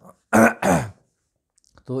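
A man clearing his throat twice in quick succession, close to the microphone, then a short pause before he speaks again.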